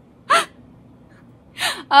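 A woman's short, breathy gasp about a third of a second in, followed by a quick breath in just before she starts talking again near the end.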